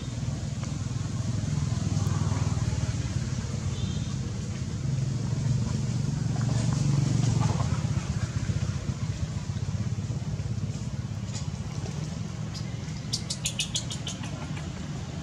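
A low motor-engine rumble, rising and falling in level, with one faint brief high chirp about four seconds in and a quick run of clicks near the end.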